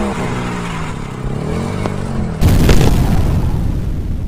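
A stock sound effect: a motor-like revving whose pitch rises and falls, then about two and a half seconds in a sudden, louder, deep boom that rumbles on.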